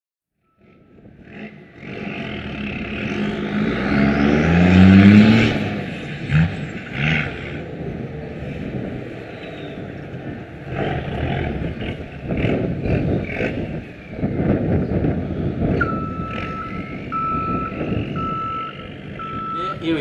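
A vehicle engine revs up, its pitch rising about four seconds in. Near the end a reversing beeper sounds a steady run of single-pitch beeps, about one and a half a second.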